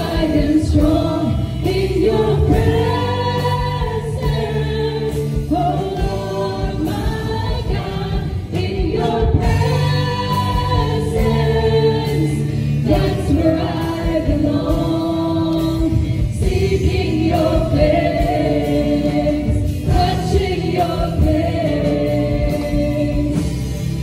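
A live church worship band: several singers singing a gospel praise song together into microphones, backed by an amplified band with guitar and drums. The voices hold long sung notes and move through the melody in phrases of a second or two.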